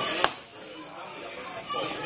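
A boxing glove landing on the pads once, a sharp smack about a quarter second in.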